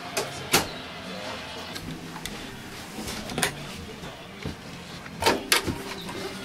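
A few sharp knocks and clicks: one about half a second in, one midway, and two in quick succession near the end. They sit over a low murmur of background voices inside a small space.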